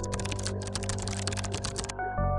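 Rapid keyboard typing sound effect, about a dozen clicks a second, laid over steady background music; the typing stops just before the end.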